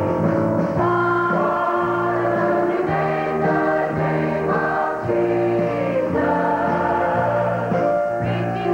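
A large choir of men and women singing a southern gospel hymn together with piano accompaniment, the voices holding long chord notes.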